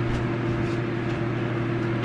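A steady low mechanical hum from a machine running in the room, with a few faint light knocks over it.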